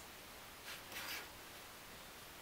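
Faint room tone with two brief, soft scratchy rustles, one about two-thirds of a second in and one about a second in, from hands handling thin laser-cut wooden puzzle pieces.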